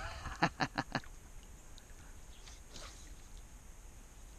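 A man laughing: a quick run of short 'ha' pulses that trails off about a second in, followed by a few faint ticks.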